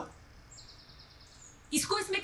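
Mostly quiet, with a faint high-pitched chirping tone lasting about a second, then a voice speaking near the end.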